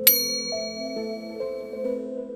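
A single bright ding, like a small struck bell, sounds at the start. Its high, clear tones ring on and slowly fade, over steady background music.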